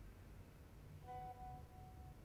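A faint chime about a second in: one soft pitched tone that rings on briefly and fades out, over near-silent room tone.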